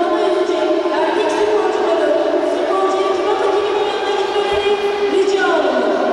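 Crowd of many voices talking and calling out at once, several of them high-pitched, with no single voice standing out. The din runs on without a pause.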